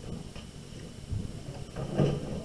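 Low room noise with faint, indistinct voices in the background and a soft low knock about a second in.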